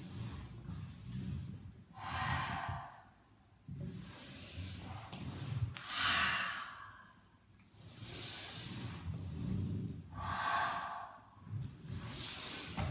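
A woman's breathing during exercise: forced breaths in and out, one about every two seconds, paced with the movement as she holds and shifts her body over an exercise ball.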